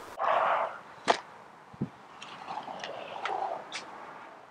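Handling sounds at a pickup truck's open rear door: a short swish, a sharp click about a second in, a dull knock just before two seconds, then light ticks and rustling.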